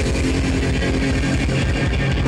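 Thrash metal band playing live and loud, with electric guitars holding notes over bass and drums.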